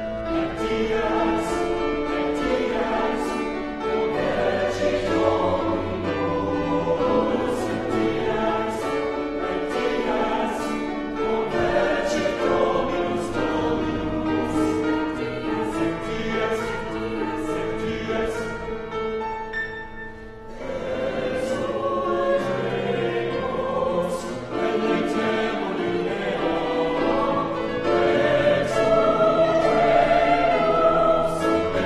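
Mixed-voice choir singing sustained chords in parts, with crisp 's' consonants. The sound drops briefly around two-thirds of the way through, then picks up again and swells louder near the end.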